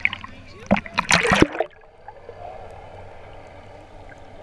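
Water splashing and sloshing loudly about a second in as the camera is plunged below the surface, then a muffled, steady underwater wash.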